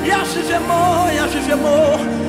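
Live Ghanaian gospel worship music: a voice holding long, wavering notes over a band's sustained keyboard chords.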